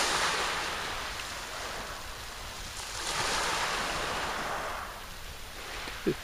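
Small waves washing onto a shingle beach: a hiss that swells near the start and again about three seconds in.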